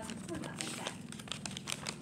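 Paper crinkling as a handmade paper blind bag is handled: a dense run of quick, irregular crackles.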